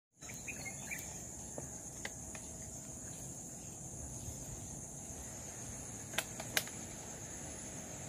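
Insects droning steadily at a high pitch over low outdoor background noise, with two sharp clicks a little after six seconds.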